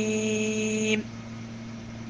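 A man's chanted voice holding one long, steady note that stops about a second in, leaving a steady low hum.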